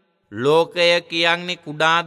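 A Buddhist monk's voice in melodic chanted recitation, with long held notes, starting after a short silence about a third of a second in.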